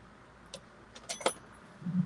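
A few light clicks and clinks of small hard objects, the loudest about a second and a quarter in with a brief high ring, over faint steady hiss.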